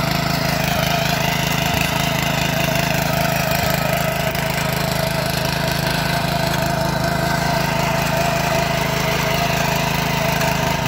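Small single-cylinder engine of a Yavuz walk-behind tiller running steadily while it works the soil between crop rows with its disc hillers.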